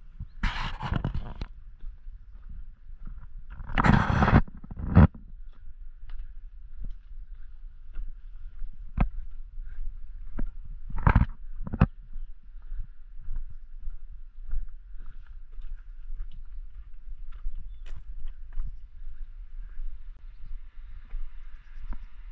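Footsteps on a stony path and brushing through scrub: two longer rustling scrapes early on, then scattered sharp knocks and crunches over a low rumble.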